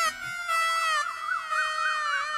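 Dramatic background music: sustained synthesizer tones sliding slowly downward, with a high warbling tone wavering up and down from about half a second in.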